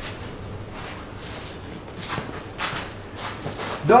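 A fire blanket's fabric rustling and scraping as it is tucked in under a dummy on a concrete floor, with a few soft swishes about two seconds in.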